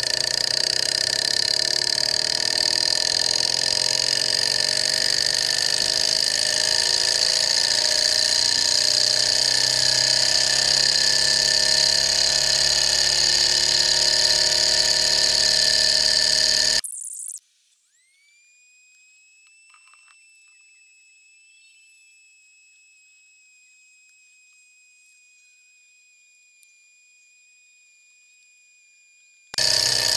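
Small Stirling model engine running steadily with its mechanical noise over the steady hiss of its natural-gas flame. About 17 seconds in the sound cuts off abruptly to near silence, leaving only a faint, thin high tone.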